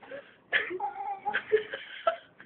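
A woman with a fresh oral piercing whimpering in pain: short, muffled whimpers, with one held, high whine about a second in.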